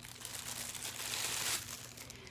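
Packaging crinkling and rustling as a small boxed item is unwrapped by hand, swelling in the middle and easing off near the end.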